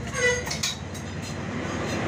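Busy market background: a steady rumbling noise, with a short voice near the start and a single sharp knock about two thirds of a second in.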